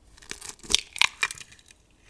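Eggshell cracking: a quick cluster of sharp, brittle crackles, most of them between about half a second and a second and a half in.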